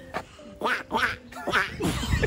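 A woman imitating a duck by blowing into her cupped hands: a run of about five short quacks.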